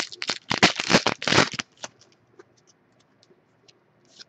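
Plastic wrapper of a trading card pack being torn open and crinkled in bursts for about the first one and a half seconds, then a few faint ticks as the cards inside are handled.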